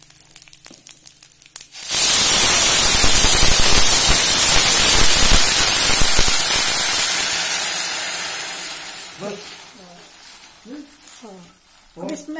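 Water poured into a hot steel kadhai of dry-roasted carom seeds (ajwain): a sudden loud sizzle of steam about two seconds in, which slowly dies away over the next several seconds.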